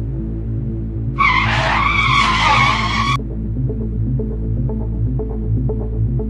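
Background music with a low drone and a pulsing beat, with a loud tyre-screech sound effect laid over it for about two seconds, starting about a second in.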